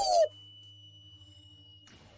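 A brief pitched sound falling in pitch and cut off a quarter second in, then a hush in the episode's soundtrack: only a faint steady high tone over a low hum.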